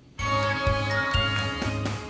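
Television programme's opening title jingle: after a brief silence, bright chiming music starts sharply with a pulsing bass note underneath.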